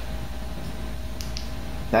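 Steady low hum of room background noise, with two faint clicks a little past the middle as the Fenix TK45 LED flashlight is switched on.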